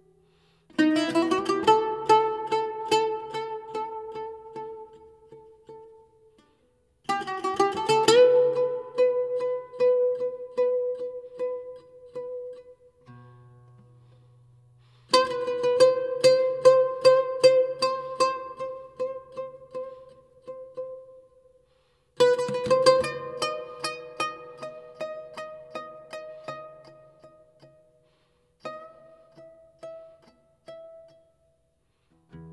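Music: a plucked string instrument playing phrases of quickly repeated notes that ring and fade away. It plays five phrases with short pauses between them.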